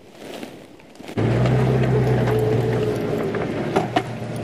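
Safari game-drive vehicle's engine running steadily with a low, even hum, cutting in suddenly about a second in.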